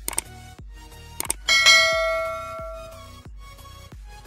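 Background music with a repeating low beat, over which a subscribe-button sound effect plays: a couple of short clicks, then about one and a half seconds in a loud bell ding that rings and fades out over about a second and a half.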